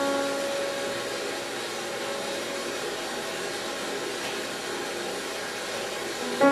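A single grand piano note, struck just before, ringing on and slowly fading, over a loud steady hiss.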